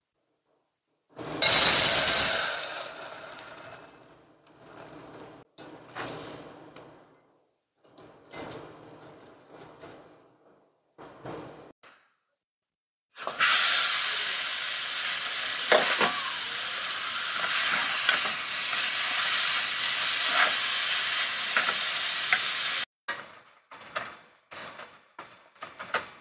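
Chicken pieces frying in a hot pan: a loud, steady sizzle that starts about halfway through and cuts off suddenly near the end. Earlier there is a shorter burst of sizzling, followed by quieter scattered pan and stirring sounds.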